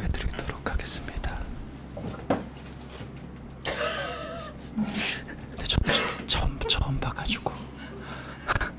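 Low, whispered men's voices and murmuring, with a short drawn-out vocal exclamation about four seconds in.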